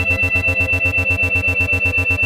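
8 Hz brainwave-entrainment audio: isochronic and monaural beat tones pulsing evenly about eight times a second over ambient synthesizer chords, with a steady high tone running through.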